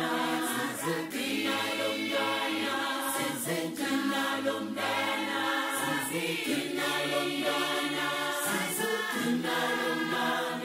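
A choir singing in harmony, holding long notes.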